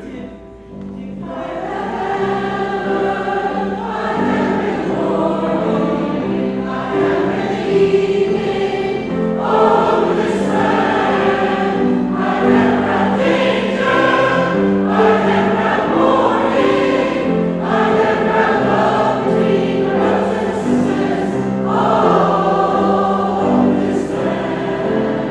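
A mixed choir of men and women singing together in harmony, with grand piano accompaniment. The singing swells in about a second in, after a brief quiet moment.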